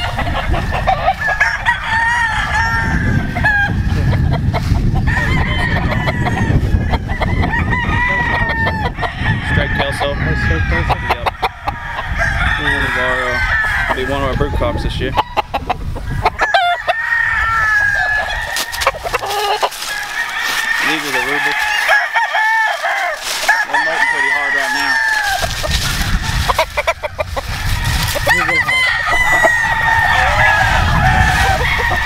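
Game roosters crowing and chickens clucking, with many calls overlapping throughout.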